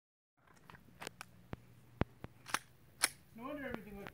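A handful of sharp, irregularly spaced clicks over a faint low hum, then a voice speaking indistinctly near the end.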